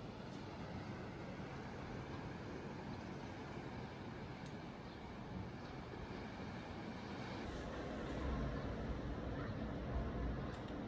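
Steady outdoor ambience, an even wash of noise with no distinct events; a low rumble grows about seven and a half seconds in.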